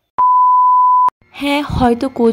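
A single steady electronic beep, a pure high tone lasting just under a second, starting and stopping abruptly with a click, laid in over an edit cut.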